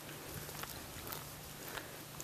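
Faint footsteps of a person walking on interlocking plastic sport-court tiles: a few soft, irregular taps over a faint low hum.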